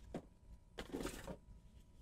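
Faint scrape, then a short soft rubbing, as a handheld thermal imager is slid up out of the close-fitting foam insert of its box.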